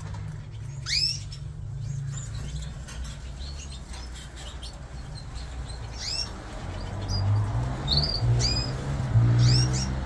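Fife fancy canaries calling in their breeding cages: short, sharply upswept chirps, a single one about a second in and several close together in the last four seconds. A steady low hum runs underneath and grows louder near the end.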